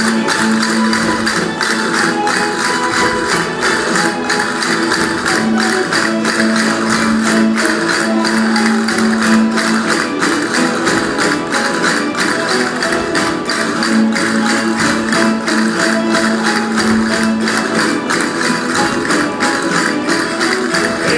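A rondalla of guitars and lutes playing a jota, fast plucked and strummed chords, with sharp clicks marking an even beat throughout.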